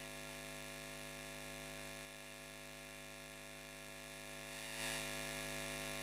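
Steady electrical mains hum with many overtones from the stage sound system, running on while no one speaks into the microphone, a little louder near the end.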